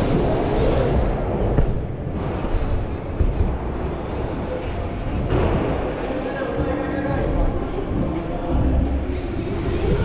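Mountain bike rolling fast over plywood skatepark ramps: a steady rumble of tyres on wood and air rushing over the handlebar-mounted camera.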